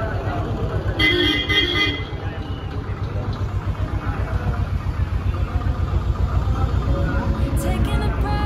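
Busy fairground background of voices over a steady low rumble, with a horn toot lasting about a second, about a second in.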